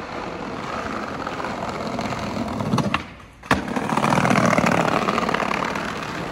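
Skateboard wheels rolling over rough paving stones, growing louder as the board comes closer. About halfway through there is a short dip and a sharp crack, then louder rolling.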